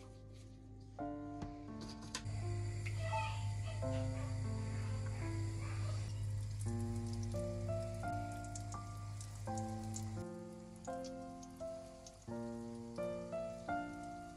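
Background music, a melody of steady notes, over balls of potato yeast dough frying in hot vegetable oil, which sizzles and crackles from about two seconds in.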